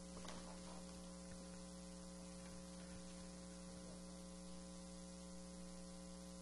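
Near silence on the microphone feed, filled by a steady, faint electrical mains hum with hiss beneath it. There is a tiny click just after the start.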